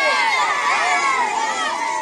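A large group of schoolboys shouting together as they march, many overlapping voices at once.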